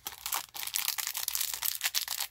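Small clear plastic packets of craft beads crinkling as fingers handle and squeeze them, a dense run of fine crackles.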